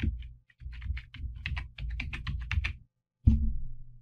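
Typing on a computer keyboard: a quick run of about a dozen keystrokes spelling out a word, then a single louder thump a little after three seconds in.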